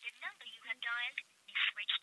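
A voice over a telephone line, thin and tinny, speaking in short phrases with a brief pause in the middle: the recorded network message that the number called is switched off.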